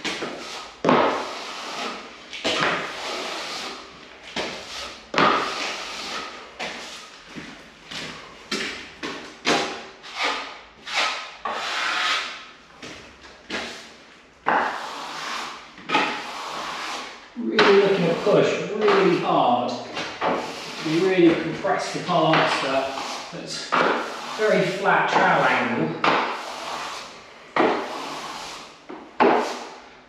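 Steel plastering trowel scraping in repeated short strokes over damp, freshly sponge-floated plaster: a dry pass that compresses the plaster and cleans up the edges and ceiling line. Low voice sounds come through over the strokes in the second half.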